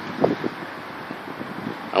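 Steady outdoor background noise, a soft even hiss with wind buffeting the microphone.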